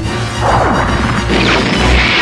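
Two sci-fi cannon-fire sound effects about a second apart, each a sudden blast trailing off in a falling whistle, over background music.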